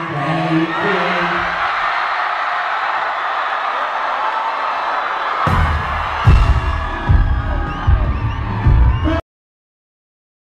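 Large arena crowd screaming and cheering. About five and a half seconds in, the heavy bass beat of hip-hop concert music kicks in. The sound cuts off suddenly near the end.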